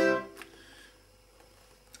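A piano accordion sounds one short held tone right at the start, fading out within about half a second, followed by a quiet room.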